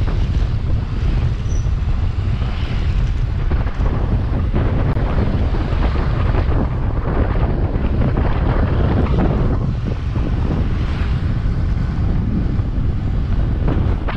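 Wind buffeting the microphone of a camera carried on a moving bicycle: a loud, steady low rumble that flutters as the airflow changes.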